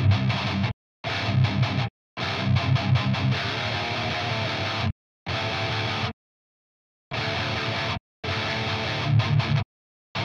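Distorted electric guitar played through an amp-sim, a heavy low metal rhythm riff in six phrases. A noise gate keyed from the guitar's clean DI signal chops each phrase off sharply into dead silence, with no hiss between the notes. The longest phrase falls near the middle and the longest silence comes just after.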